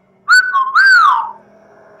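A two-part wolf whistle, an admiring catcall: a short high note, then a longer note that swoops up and falls away.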